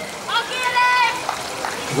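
One high-pitched shouted call, about a second long, from a spectator cheering as a swimmer is introduced at the blocks. It sounds over the steady hubbub of the pool.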